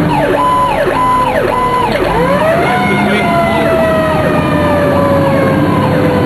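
Fire squad truck's siren on an emergency run. It cycles in a fast yelp for about the first two seconds, then switches to a wail that rises and falls away slowly.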